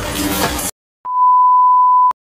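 Electronic music with a beat cuts off suddenly. After a short silence comes one steady, high electronic beep about a second long, which ends with a click.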